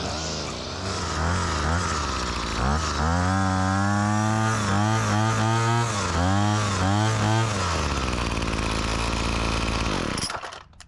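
Remington RM2580 25cc two-stroke string trimmer engine running. It idles, then revs up about three seconds in and holds high with a few brief dips, dropping back to idle near the end.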